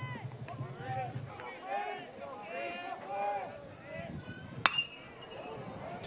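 Metal college baseball bat striking the ball: one sharp ping with a brief high ringing after it, about three-quarters of the way through, as a 2-2 pitch is hit for a high fly ball. Before it, faint voices from the stands.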